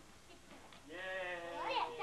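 A high voice holding one long note that slowly falls in pitch, starting about a second in, with other voices chattering over it near the end.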